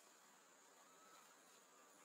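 Near silence: faint outdoor ambience with a steady, high, faint insect buzz.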